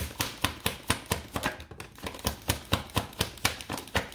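A tarot deck being shuffled by hand, the cards clicking and slapping against each other in a quick, fairly even run of about four to five clicks a second, while the reader draws a clarifying card.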